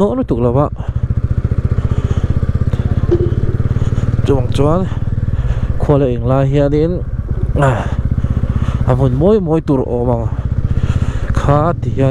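TVS Ronin's single-cylinder engine running steadily at low road speed, a continuous low hum under the rider's intermittent voice.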